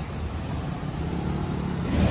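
City street traffic: a steady low rumble of passing cars and motorcycles, growing slightly louder toward the end.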